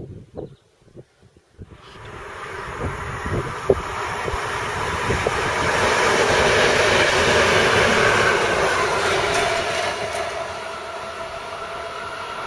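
DR class 203 diesel-hydraulic locomotives hauling a work train pass close by. The engine and wheel noise rises from about two seconds in, is loudest in the middle, then eases a little as the train moves away, its tones dropping slightly in pitch. Before the train arrives, wind buffets the microphone.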